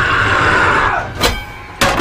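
A man's drawn-out battle scream, held for about a second, then two sharp, heavy hits about half a second apart as a frying pan is brought down in a fight.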